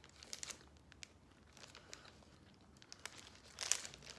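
Foil snack-bar wrapper crinkling faintly as it is handled and peeled back, a few scattered crackles with a louder burst near the end.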